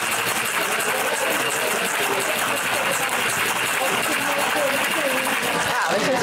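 Ice rattling in a metal cocktail shaker shaken vigorously, a fast, continuous rattle.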